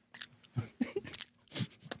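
Close-miked chewing of a dry, spiced whole-wheat flatbread crisp: a run of short, irregular crunches and crackles right into the microphone.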